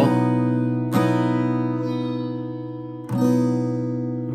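Acoustic guitar strummed three times: at the start, about a second in and about three seconds in. The chord is fretted at the fifth fret with the first and second strings ringing open, and each strum is left to ring and fade.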